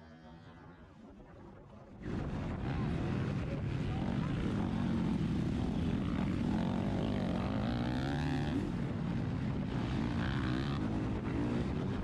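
KTM motocross bike's engine heard from an onboard camera, revving up and down through the gears under race throttle over wind and track noise. The engine is faint for about the first two seconds, then comes in loud.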